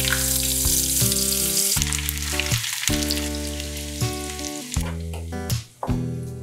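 Sliced onions dropped into hot oil in a frying pan, sizzling loudly. The sizzle starts suddenly and gradually eases off, over background music.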